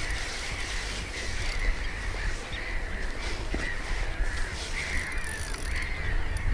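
Birds calling steadily, short wavering calls repeating one after another, over a steady low rumble.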